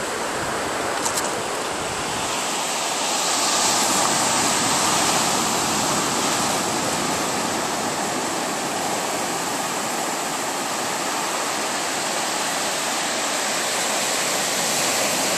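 Ocean surf breaking and washing up a sandy beach: a steady rush of waves that swells a little a few seconds in.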